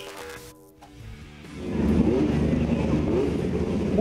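A short musical sting with steady tones, ending about a second in. From about a second and a half, midget race car engines running loudly in the pits, with a wavering pitch.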